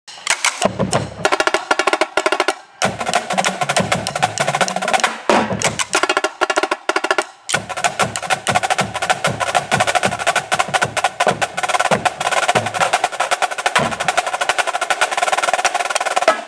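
Drum corps marching drumline playing a fast, dense passage, many sticks striking together, with low drum notes stepping in pitch underneath. The playing breaks off briefly twice, about three seconds in and again a little past seven seconds.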